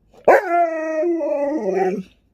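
A husky-malamute cross dog making one long "talking" howl. It sweeps sharply up at the start, holds a steady pitch, then drops lower near the end.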